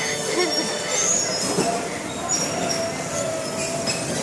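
Electric bumper cars running on the rink, with thin high squeals and a longer whining tone over a steady rumbling noise of the ride.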